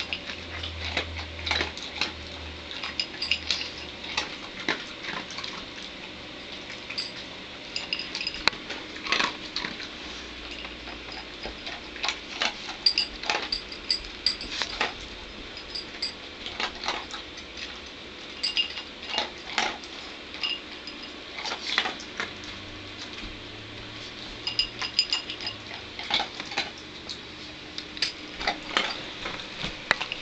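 Dogs eating from food bowls: irregular clinks and knocks of a bowl being licked and nudged, some with a brief high ring, mixed with chewing and licking.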